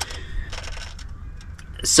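A few light metallic clicks and clinks as the clip of a caravan's coiled breakaway cable is hooked onto the tow bar.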